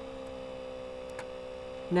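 Steady electrical hum made of several constant tones, with one faint click about a second in.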